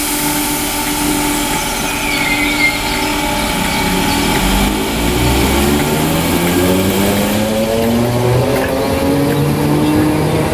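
Merseyrail PEP-family electric multiple unit pulling away from the station, its traction motors whining in several rising tones that climb in steps as the train gathers speed.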